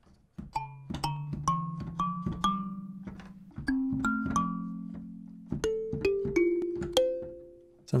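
Sampled coconut kalimba played from a keyboard through a software sampler: a run of plucked notes climbing in pitch about half a second apart, then a few lower notes and a few higher ones, each struck and ringing out as it fades.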